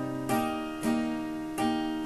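Acoustic guitar played on its own, three chords strummed and left to ring and fade.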